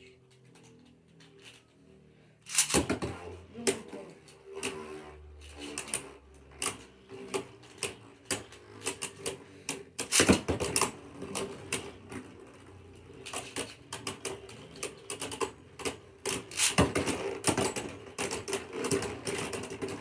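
Beyblade spinning tops in a plastic stadium. At first a single top spins with a faint steady hum. From about three seconds in, the tops clash in long runs of rapid, sharp clicking and knocking against each other and the plastic walls, with loud flurries near the start, the middle and toward the end. The sound dies out at the very end as the tops stop.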